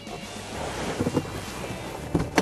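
Wind rushing over the microphone outdoors, a steady noisy hiss, with a couple of dull low knocks about a second in.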